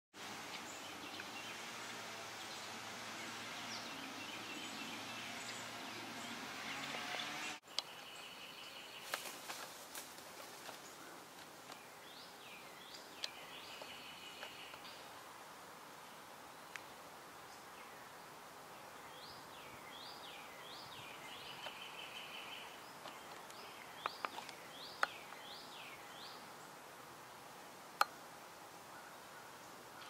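Songbirds singing over faint outdoor background noise: repeated short slurred whistled phrases and brief trills, high in pitch. The background drops suddenly about a quarter of the way in, and a few sharp clicks come near the end.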